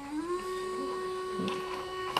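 Portable battery-powered manicure drill buzzing as its handpiece motor runs, running unplugged from the mains. The pitch steps up about half a second in, then holds steady.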